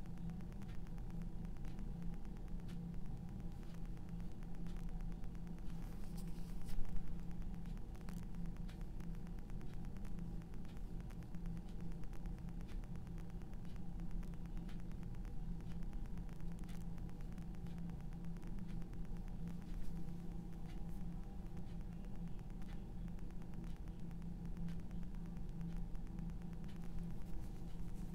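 Faint scratching and dabbing of a paintbrush working oil paint on canvas over a steady low hum, with one brief louder rustle about seven seconds in.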